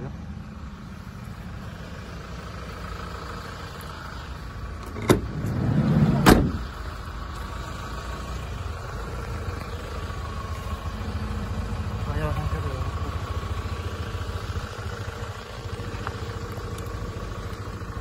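Hyundai Grand Starex's 2.5 VGT diesel engine idling steadily. About five seconds in a latch clicks, then the van's sliding door rolls and shuts with a loud bang about a second later.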